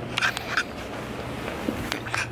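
A few brief rustles and knocks of a handheld camera being moved and set up, mostly in the first half second, over low room noise.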